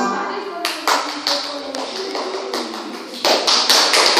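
The last chord of a recorded dance tune fades out. A few scattered claps follow and build into applause about three seconds in.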